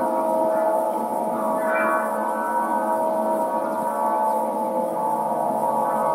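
Aeolian wind harp tuned to A=432 Hz, its strings sounding in the wind: a held chord of many steady, overlapping tones, with higher overtones swelling and fading about two seconds in.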